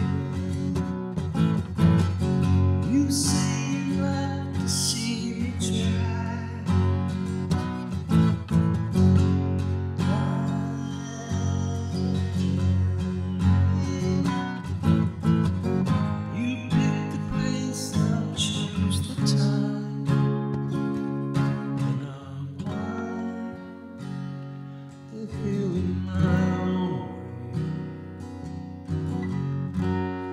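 Steel-string acoustic guitar playing an instrumental passage, strummed and picked, with no singing.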